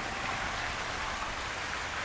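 Steady, even hiss of outdoor background noise with no distinct knocks or voices.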